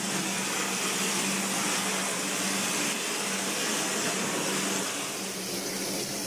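Plaster spraying machine's hose nozzle spraying lime base plaster onto a brick wall: a steady hiss of spray and compressed air with a low steady hum underneath.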